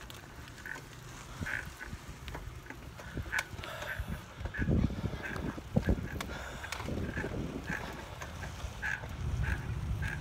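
A three-wheeled bike being pedaled, giving a short, repeated squeak about once a second in time with the pedal strokes. Under it is a low wind rumble on the microphone, with a few knocks and a louder rumble in the middle.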